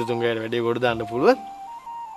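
A man's voice speaking dialogue, its pitch rising at the end, for about the first second and a half, over soft background music with long held notes that carry on after he stops.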